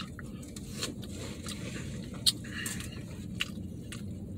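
A person chewing a mouthful of Mongolian beef, with a few faint, sharp clicks scattered through, over a low steady hum.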